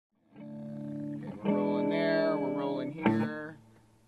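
Held instrument chords from a band warming up: a steady chord, then a louder one about a second and a half in, cut by a sharp knock about three seconds in and fading out.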